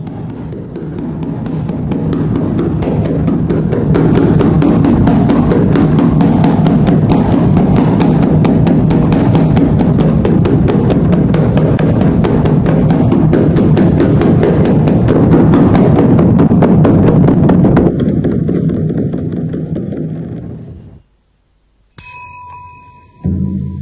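Rapid, continuous drumming that builds up over the first few seconds, holds loud, then fades away near the end.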